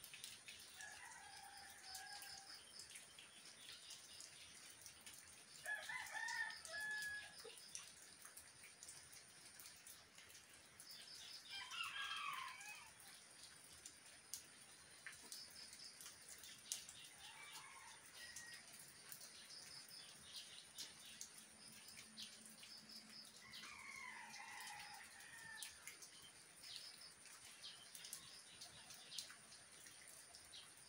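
Faint steady rain with scattered drips, over which a rooster crows five times, roughly every five or six seconds. Short high chirps come and go between the crows.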